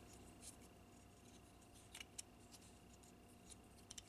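Near silence, with two faint clicks close together about two seconds in as the plastic parts of a Transformers Power of the Primes Swoop figure are handled and fitted together.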